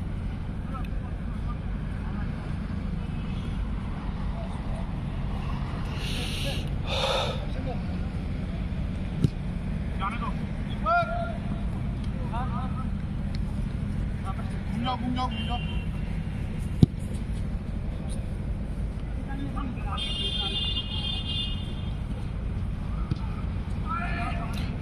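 Outdoor football-game ambience: a steady low background rumble with faint distant shouts of players, and twice, well apart, a sharp thud of the ball being kicked.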